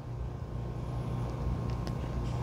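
A low, steady background rumble, with faint sniffing as a man smells a glass of beer.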